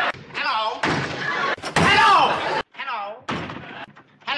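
A door banging open and a man calling out a drawn-out 'Hello' in a nasal voice.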